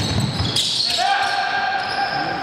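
Basketball bouncing on a wooden gym floor in a large, echoing hall, with short sneaker squeaks. About a second in, a voice calls out and holds the note.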